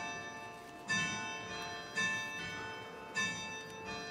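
Church bells ringing, with a stroke about once a second and each stroke left to ring on. Successive strokes differ in pitch.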